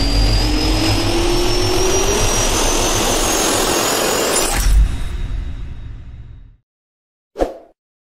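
Jet engine sound effect: a turbine whine rising slowly in pitch over a deep rumble, with a louder burst at about four and a half seconds, then fading out to silence by about six and a half seconds. One short sound follows near the end.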